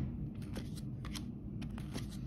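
Football trading cards flipped through by hand, one at a time: the card edges slide and snap in a series of light, irregular clicks over a faint low hum.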